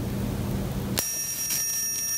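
Meiruby rechargeable electronic arc lighter switched on about a second in: a steady high-pitched buzz from its electric arc, with a few faint crackles, as the arc melts a notch into the rim of a styrofoam cup.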